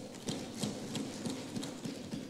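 Lawmakers thumping on their wooden desks, the parliamentary form of applause: a rapid, uneven patter of dull knocks that fades out just after the end.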